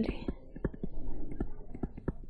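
Stylus tapping and scratching on a touchscreen while handwriting, making short, irregular ticks several times a second.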